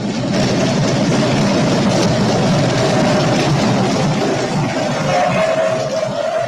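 Applause filling an assembly chamber: many people clapping, starting abruptly and holding steady. A single held tone joins about five seconds in.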